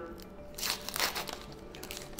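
A 4-0 nylon suture packet crinkling as it is handled and pulled open, in a few short rustles between about half a second and a second and a half in.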